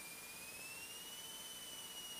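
Faint thin high-pitched whine over low hiss on the cockpit intercom audio of a Commander 112, rising slightly in pitch and then holding steady.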